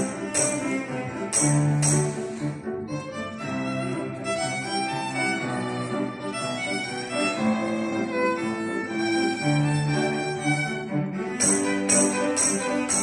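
Violin, cello and grand piano playing a pop-song arrangement together. A foot-played tambourine jingles on the beat for the first couple of seconds, drops out while the strings and piano carry the melody, and comes back near the end.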